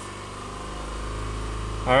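2010 Subaru Forester's 2.5-litre flat-four engine heard from inside the cabin as a low, steady hum, growing gradually louder as it is given a little gas.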